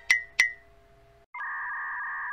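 Edited-in comic sound effects: two quick bright pings with a short ringing tail, then after a brief pause a steady electronic beep of two pitches held together.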